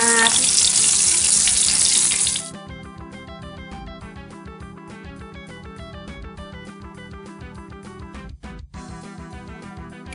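Breaded meat nuggets sizzling loudly in hot oil in a frying pan, cutting off about two and a half seconds in. Then quieter background music with a quick regular beat.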